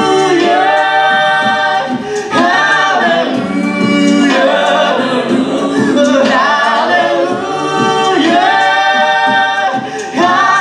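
Five-voice a cappella group singing live through microphones, with a woman's voice among men's: sustained chords over a steady low bass line, with short gaps between phrases about two seconds in and near the end.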